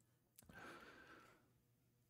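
Near silence, with one faint exhaled breath about half a second in.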